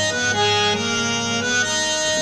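Electronic keyboard playing on its harmonium voice: a chord is held under a melody, and the notes move about a third of a second in and again near the end. The reedy, steady sound is the sustained harmonium patch.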